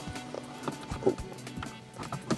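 Quiet background music with a few light clicks in the middle.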